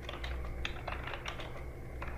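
Typing on a computer keyboard: quick, irregular keystroke clicks, about five a second, over a steady low hum.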